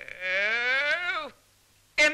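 A man's long drawn-out wail, rising in pitch for about a second and dropping away as it breaks off.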